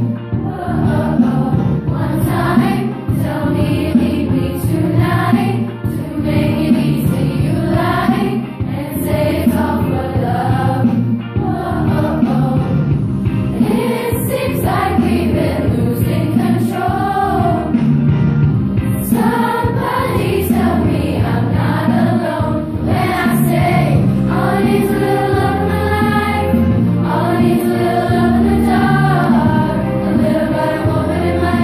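Beginning girls' choir of young junior-high voices singing a song together, with longer held notes near the end.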